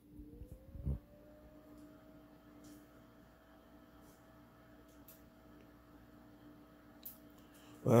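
Creality CR6-SE 3D printer powering up: a faint tone rises in pitch over about a second and then holds steady, like a cooling fan spinning up to speed, over a steady low hum. There is a soft thump about a second in.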